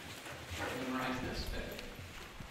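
Indistinct talking in a hall, with footsteps and shuffling on a hard floor as people walk about.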